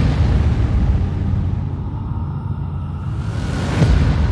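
Wind rushing over the camera microphone of a motorcycle at road speed: a loud, steady low rumble of buffeting. Two surges of hiss come through, one at the start and one near the end.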